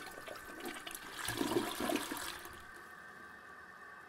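Toilet flush sound effect: rushing, gurgling water that drains away and fades out about two and a half seconds in.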